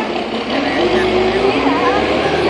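A motor vehicle running by on the street, a steady engine drone under the talk.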